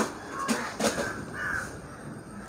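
A crow cawing a few times in the background.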